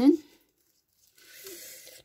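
A faint, soft rustle from handling, starting a little over a second in and lasting under a second.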